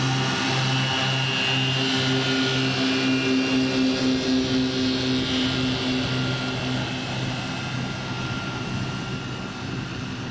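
Electric motors and propellers of the eLazair ultralight floatplane at full power on its takeoff run across the water: a steady propeller drone with a thin high electric whine, slightly pulsing, growing fainter in the second half as the plane pulls away.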